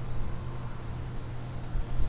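Quiet background between phrases: a steady high-pitched whine over a low steady hum.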